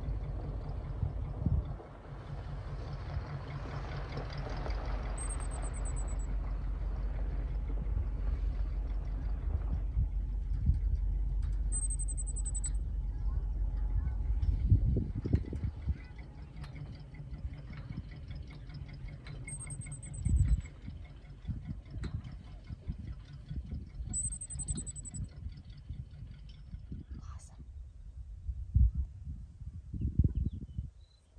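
Outdoor wind rumbling on the microphone, dropping off about halfway through, with four short, high, thin bird calls spaced several seconds apart and a few low thumps.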